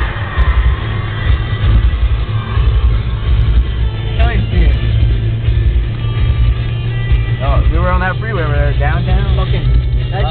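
Music playing inside a moving car, over a steady low rumble of road and engine noise in the cabin. A voice comes in over it about seven and a half seconds in.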